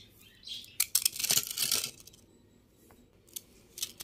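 Crisp fried appadalu (papads) being broken and crumbled by hand on a steel plate: a run of crackling crunches in the first two seconds, then a couple of small snaps near the end.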